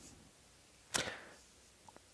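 A single short, sharp click with a brief swishing tail about a second in, in an otherwise quiet pause.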